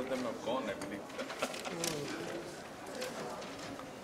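Faint, indistinct voices of several people talking at once, with a few light clicks.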